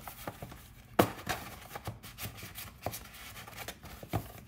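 Cardstock cards and paper envelopes sliding and rubbing into a cardstock box, with light rustles and taps and one sharper tap about a second in.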